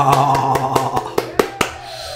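The last held note of a swing band recording fades out, overlapped by a run of sharp hand claps.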